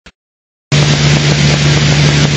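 Piper Warrior's four-cylinder piston engine and propeller droning steadily in cruise, heard inside the cockpit with airflow noise. It cuts in suddenly a little under a second in, after silence.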